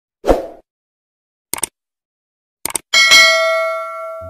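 Subscribe-button animation sound effects. A soft pop comes first, then two quick pairs of clicks, then a bright notification-bell ding near the end that rings on and fades slowly.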